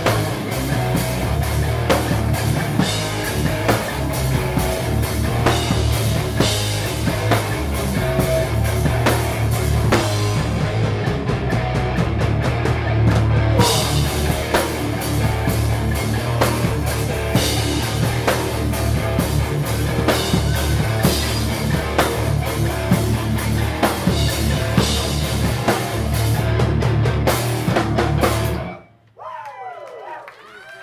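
Hardcore punk band playing live: distorted electric guitars, bass and a drum kit pounding out a fast, loud song with crashing cymbals. The song stops abruptly near the end.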